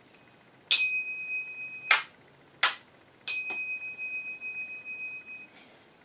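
A pair of Saroyan finger cymbals (zills) struck together twice, each strike ringing on a clear, high, steady pitch for a second or two before fading, with two short dry clacks between the strikes.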